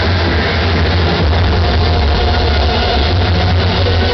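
Loud dance music over a large sonidero sound system, dominated by a steady, heavy bass that overloads the recording.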